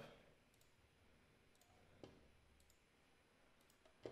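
Near silence with a few faint, scattered clicks from a computer mouse, the clearest about two seconds in.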